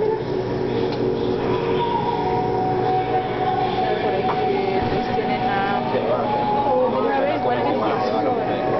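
A steady mechanical hum with several held tones under indistinct voices of onlookers.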